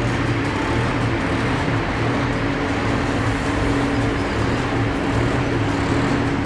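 Steady mechanical noise with a low, even hum and a faint regular low pulse.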